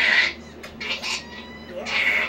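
Java macaque lip-smacking while grooming: a short breathy burst at the start, then a thin, high, steady squeak lasting about a second.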